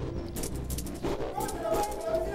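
Rattling and clattering of loose objects being handled, in several short clicks, with a voice coming in about halfway through over a steady low background.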